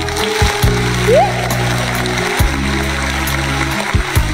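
Instrumental karaoke backing track playing with no vocal, its sustained chords changing every second or two, with a short rising note about a second in.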